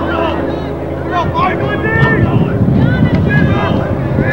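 Wind buffeting the microphone, a low rumble that comes in about a second in, under the voices of people talking nearby.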